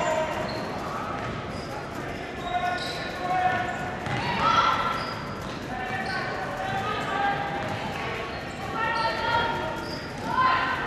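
Basketball dribbled on a hardwood gym floor during play, with voices calling out from time to time, loudest about four and a half seconds in and again near nine seconds, all ringing in the gymnasium.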